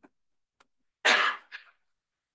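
A sudden, loud burst of breath from a person's throat or nose about a second in, followed by a shorter, weaker one, of the kind made in a cough or sneeze.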